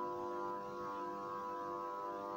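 Background music: a steady held chord or drone of several sustained tones, with no beat or melody moving.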